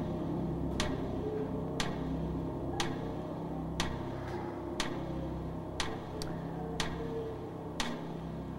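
Game-show countdown timer ticking once a second while the 30-second answer clock runs, over a low steady background drone.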